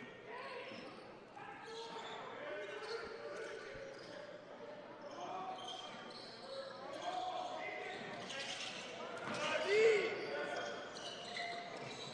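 Basketball being dribbled on a hardwood gym floor, with voices echoing through the arena and a short squeak near the end.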